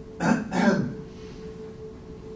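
A man clearing his throat: two short, rasping bursts within the first second.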